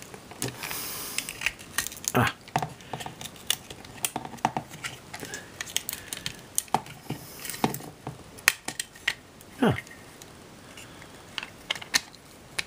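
Small screwdriver prying and scraping at a Flip Ultra camcorder's plastic housing and circuit board as it is taken apart, with irregular small clicks and ticks of plastic and metal parts.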